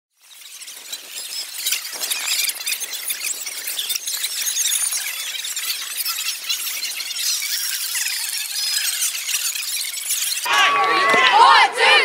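Boys' voices shouting together in a team huddle, breaking in sharply about ten seconds in. Before that, a dense, high-pitched busy sound with no low end fades in from silence.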